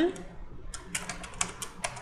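Typing on a computer keyboard: a quick run of about ten keystrokes, starting just under a second in.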